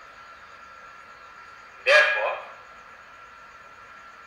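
A single short, loud animal call about two seconds in.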